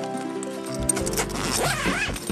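A tent door zipper being pulled open, with the rasp of the zip in the second half, over background music with steady held notes.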